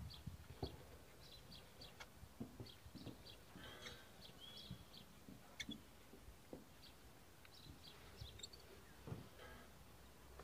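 Near silence with faint birdsong: short high chirps repeating throughout. A few faint clicks and light knocks are scattered among them.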